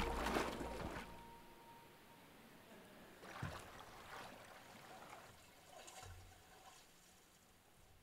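Spectacled bear splashing in a shallow pool: a loud splash at the start, then fainter splashes and trickling water about three and a half seconds in and again near six seconds, dying away.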